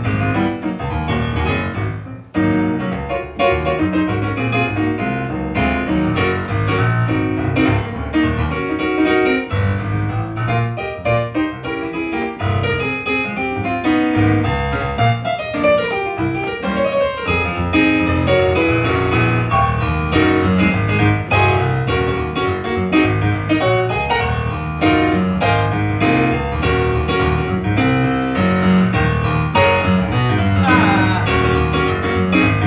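Electric stage piano played with a piano sound: a busy, rhythmic low bass line under chords and runs, with a brief drop in level about two seconds in.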